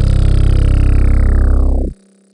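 A single long 808 bass note from an FL Studio 'wonky 808' sound, its deep low end holding steady while its bright upper overtones sweep downward, then cutting off sharply just before the end.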